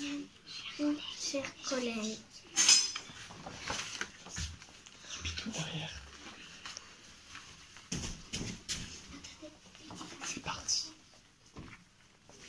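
Children speaking quietly in a small room, with handling noises and scattered clicks and knocks; the loudest is a sharp knock just under three seconds in.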